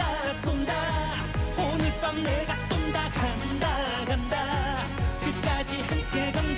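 Upbeat Korean trot song sung by a male vocalist over a dance backing track, with a steady kick-drum beat.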